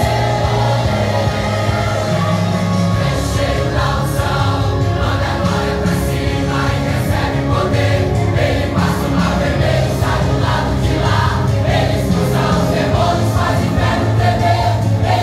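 A congregation singing a gospel worship song together, led by singers on microphones, over band accompaniment with a steady beat.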